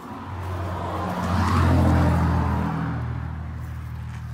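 A motor vehicle passing by on the road. Engine and tyre noise swell to a peak about two seconds in and then fade, and the engine note drops as it goes by.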